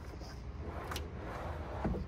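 A 2021 Toyota 4Runner's sliding rear cargo deck being pushed back in on its rails: a soft sliding rumble with a light click about halfway and a low thump near the end as it goes home.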